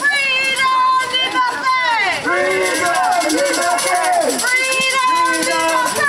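Singing: a voice carrying a melody, with long held notes and pitch glides, continuing without a break.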